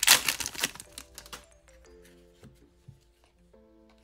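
Crinkling of a foil trading-card pack wrapper being torn open and handled, a dense crackle over the first second and a half. After that, soft background music with held notes.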